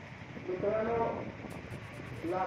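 A protester's raised voice shouting a slogan: one drawn-out call with wavering pitch, about half a second in and lasting about a second, over steady street background noise.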